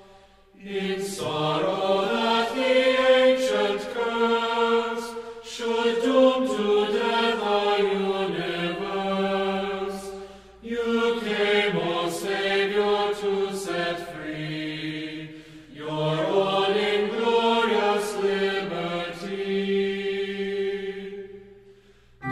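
Sung chant as background music: voices singing sustained melodic phrases, with short pauses about ten and sixteen seconds in, fading out at the end.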